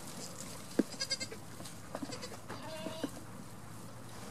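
Goats bleating: a short high, fluttering call about a second in and another around three seconds. Sharp knocks of hooves on wooden boards are scattered through it, the loudest just before the first call.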